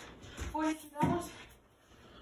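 Two short, high-pitched voice sounds, about half a second and a second in, with no clear words.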